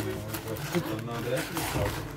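Paper wrapping crinkling and a cardboard box rustling as a parcel is unpacked by hand, with people talking in the background.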